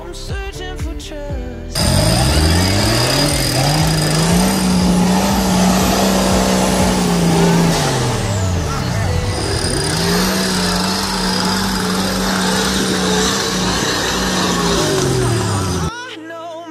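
Background music for the first couple of seconds, then an off-road competition truck's engine revving hard under load as it climbs a rock section. The pitch rises and holds high for several seconds, drops, then rises and holds again before falling away.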